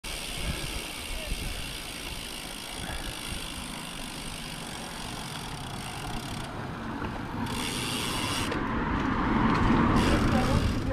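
Wind rumbling on the microphone over tyre and road noise from a road bike ridden along a street. A car approaches and grows louder over the last two seconds or so.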